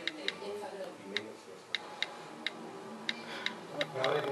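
Taps on an iOS touchscreen keyboard making its click sound while an e-mail address is typed: about a dozen short, sharp ticks at irregular spacing.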